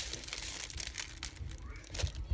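Tissue paper and clear plastic packaging bags crinkling and rustling irregularly as they are handled and set into a box.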